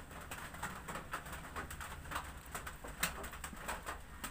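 Electric hair clipper with a number 2 guard running against the back of the head, a steady low hum with a fast crackle of clicks as it cuts through the hair.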